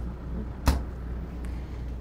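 A refrigerator door swinging shut with a single sharp thump a little under a second in.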